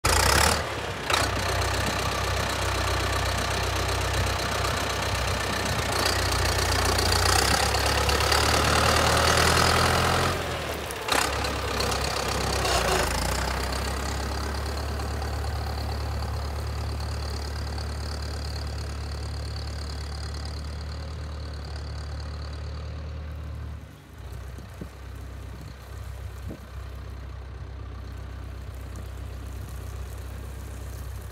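Volvo BM T 650 tractor's diesel engine running, louder and higher in the middle stretch, then pulling away and fading steadily as the tractor drives off.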